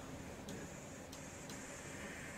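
Quiet room tone: a faint steady hum with a few faint ticks.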